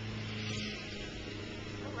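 A steady low machine hum that runs unchanged throughout, with a brief soft hiss about half a second in.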